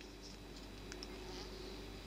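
Faint steady buzzing hum, with a few tiny ticks, while water is fed through a filler tube into a small live-steam model locomotive's boiler.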